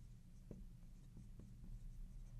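Faint marker strokes on a glass lightboard: a few soft ticks and scrapes as letters are written.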